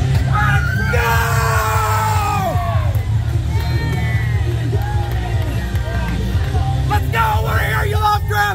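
Loud wrestler's entrance music starting suddenly, with a heavy bass beat and a shouting voice over it in the first few seconds.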